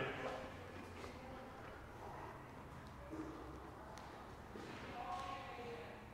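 A quiet room with only faint sounds: a faint voice briefly about three seconds in and again near the end.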